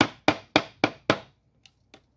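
A hammer striking the end of a screwdriver held against a car vent window's metal frame: five sharp hammer blows about four a second, then two faint taps near the end.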